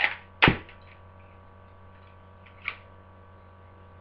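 Homemade Lego brick replica gun firing: one sharp, loud snap about half a second in, then a small click near three seconds, over a faint steady hum.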